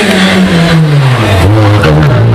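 Renault Twingo rally car's engine coming off the throttle as it slows into a tight bend, its note falling steadily to about half its pitch before levelling out.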